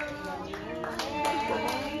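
A group clapping hands in a steady beat, about two claps a second, while voices talk and a held sung note fades out.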